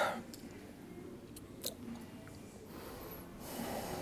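A congested man's short, loud burst of breath noise through the nose and throat right at the start, then a quiet room with a faint breath near the end.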